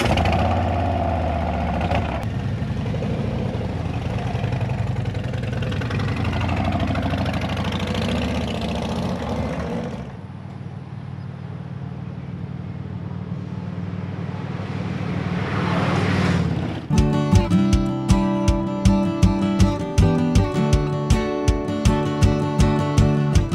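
Cruiser motorcycle engines running and accelerating, the pitch rising as they pull away. They drop back, then grow louder as the bikes approach and pass by about sixteen seconds in. After that, acoustic guitar music with plucked strumming takes over.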